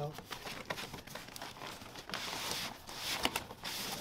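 Cardboard packaging being handled and lifted out of a shipping carton: rustling and scattered light knocks, with a longer rustling scrape about two seconds in.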